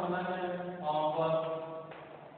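A voice drawing out its words in long, held, chant-like syllables, which stop just before the end.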